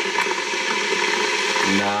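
Electric kettle heating water, a steady hiss as it comes to the boil. A man's voice starts near the end.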